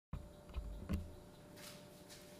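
Quiet room tone with a faint steady hum and two soft low thumps, about half a second and a second in.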